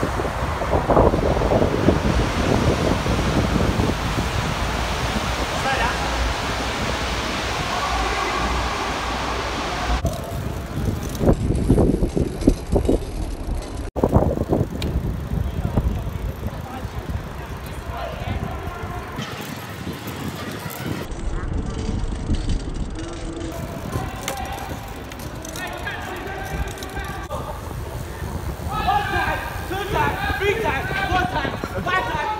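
Wind rushing over the microphone of a camera riding along with bicycles through city traffic, with people's voices and shouts, loudest near the end. The sound changes abruptly about ten seconds in and again a few seconds later.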